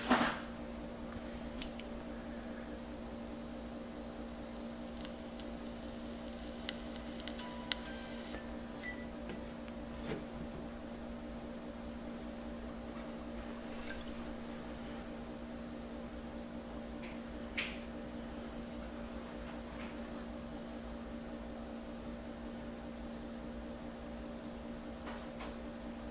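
Steady low electrical hum of room tone, with a sharp click at the start and a few faint ticks and clicks scattered through.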